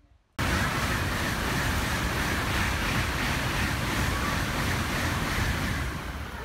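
Steady heavy rain falling outdoors: a loud, even rushing hiss that starts abruptly about half a second in.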